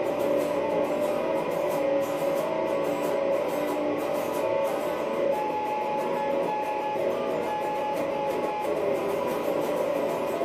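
Electric guitar playing an instrumental blues passage with a quick, even rhythm and no singing, with a run of held single notes in the middle of the passage.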